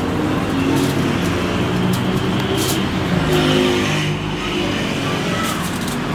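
Busy background noise: a steady low rumble with indistinct voices, and a few brief clicks.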